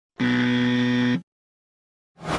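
Buzzer sound effect: one flat, steady buzz lasting about a second, starting and stopping abruptly.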